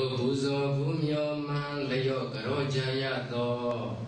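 Buddhist monk chanting a recitation into a microphone: one male voice held on steady, drawn-out pitches in a single continuous phrase that breaks off near the end.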